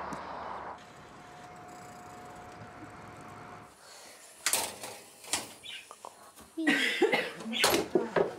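A faint steady tone, then a few sharp knocks about halfway through, followed by short bursts of a person's voice near the end.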